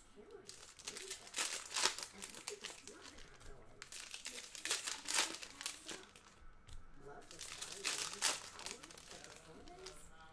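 Foil trading-card pack wrappers crinkling and rustling in the hands in irregular bursts as packs are opened and handled.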